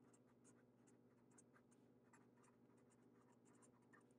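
Very faint scratching of a Sharpie permanent marker writing on paper: a quick run of short pen strokes.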